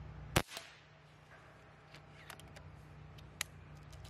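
A single shot from a low-powered .22 PCP air rifle, the Reximex Throne Gen2, a short sharp pop about a third of a second in. It is followed by several light clicks and a tick as the rifle is reloaded from a pellet tin.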